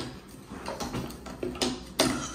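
Cardboard jigsaw puzzle pieces being picked through and set down on a wooden table: a scatter of light taps and clicks.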